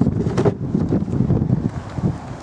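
Wind buffeting the microphone in a steady rumble, with one short knock about half a second in as the car's boot floor panel is handled.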